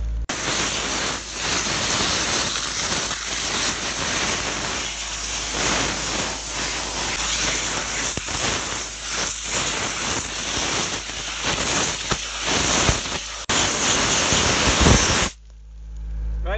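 An Airspade air-excavation tool's compressed-air jet hissing steadily as it blasts soil away from a tree's buried root collar. It grows louder near the end, then cuts off suddenly.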